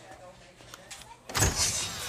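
A faint voice, then loud electronic dance music with heavy bass cuts in just over a second in.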